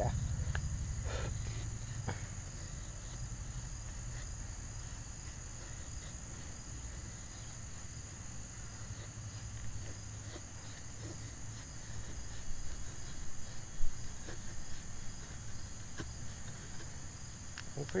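Cold Steel Bushman knife blade shaving curls off a pine stick to make a feather stick: faint scraping cuts, busier with a few sharp clicks in the last third. A steady high-pitched insect buzz runs underneath.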